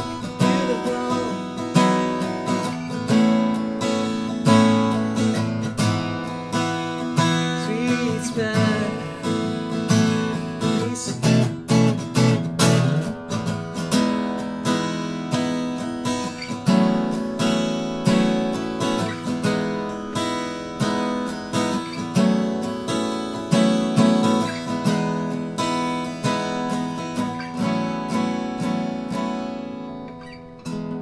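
Maestro Victoria ME acoustic guitar, a triple-O size cutaway with an Adirondack spruce top and Macassar ebony back and sides, played solo and fingerstyle: a flowing melody of plucked notes over chords, with a flurry of sharper strokes about twelve seconds in.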